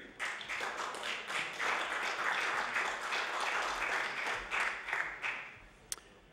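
Applause in the assembly chamber: many hands clapping for about five seconds, then dying away.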